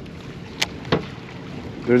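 Steady wind and water noise around a small fishing boat, broken by two sharp clicks about half a second and a second in.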